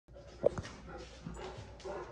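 A dog gives one short bark about half a second in, excited while searching for a kitten hidden under furniture, followed by quieter scattered sounds.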